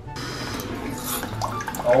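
Electronic bidet toilet seat's nozzle spraying water: a steady hiss that starts suddenly just after a button press.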